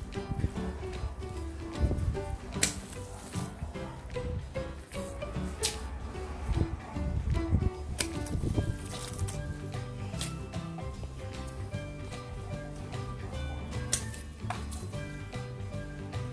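Background music, with a few sharp snips of hand pruning shears cutting small mandarin branches, about four in all.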